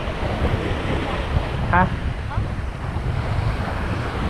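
Small surf waves breaking and washing up a sandy beach in a steady wash, with wind buffeting the microphone.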